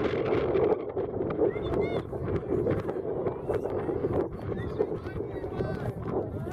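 Wind buffeting the microphone in a steady rumble, with faint shouts and calls of players and spectators across the field now and then.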